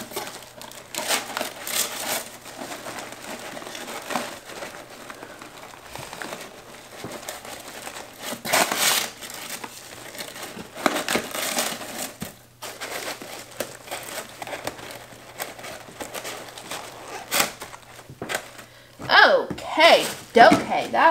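Honeycomb kraft paper wrap and tissue paper crinkling and rustling as they are pressed and tucked around boxed soap bars in a cardboard shipping box, in irregular bursts with louder crackles now and then.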